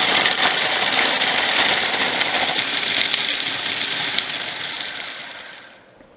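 Food processor running at full speed, its blade chopping chunks of dried salted beef, with many small clatters of meat pieces against the plastic bowl. The sound fades over the last two seconds and stops near the end.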